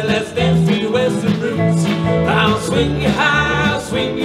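Live western swing band playing a passage between sung lines: fiddle and steel guitar over upright bass, drums and guitars, with a rising slide in the lead line a little over two seconds in.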